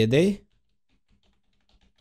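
Computer keyboard typing: a quick run of faint key clicks in the second half, typing out a single word.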